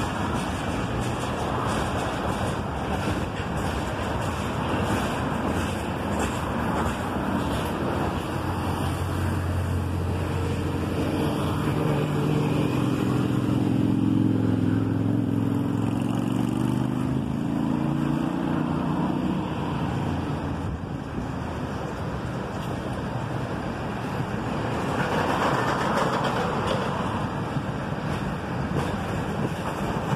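Freight train cars rolling past, a steady rumble and clatter of wheels on rail. A low droning hum swells in the middle and fades out about twenty seconds in.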